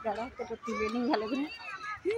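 Voices of people and children talking and calling out close by, with no one voice standing out as a clear line of speech.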